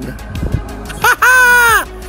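A voice holding one long drawn-out note for just under a second, over background music, with a brief low thump before it.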